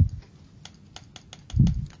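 Quick, light clicks of a computer keyboard, about ten in just over a second, followed near the end by a short low thump.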